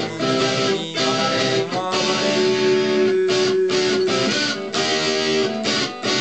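Electric guitar played with the fingers, a melodic line with one note held for about two seconds in the middle.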